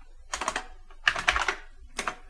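Keystrokes on a computer keyboard: a few quick taps in short clusters, about half a second in, around a second in and again near the end.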